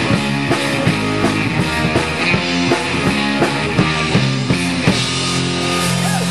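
Live rock band of two electric guitars, electric bass and drum kit playing loud, with steady drum hits until about five seconds in. Then the drums stop and a held chord is left ringing.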